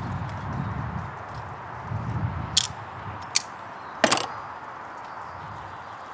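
Small metal tool parts clicking as they are handled, three sharp clicks in the middle stretch, the last one loudest, over a low rumbling background.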